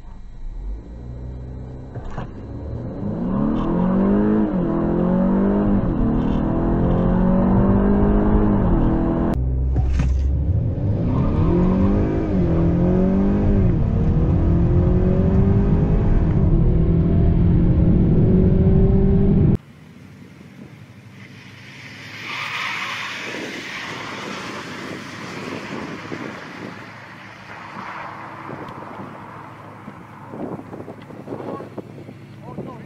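Honda Accord Sport's 2.0-litre turbocharged four-cylinder engine heard from inside the cabin, accelerating hard on a drag-strip run. Its pitch climbs and drops back again and again as the 10-speed automatic shifts up. About two-thirds of the way through it cuts off suddenly, leaving quieter outdoor noise.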